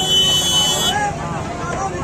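A shrill, high-pitched horn toot, held steady for just under a second and then cut off, over the chatter of a dense street crowd.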